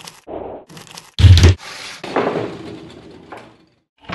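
Short bursts of paper or tissue being crumpled, then about a second in a loud, sudden bang with a heavy low thud. A fading, scraping tail follows and dies away near the end.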